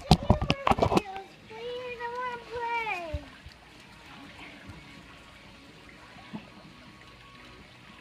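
A quick run of knocks and rubs from the phone being handled, then a high, child-like voice calling out for about two seconds. After that there is the steady trickle of water from the pool's spa spillover.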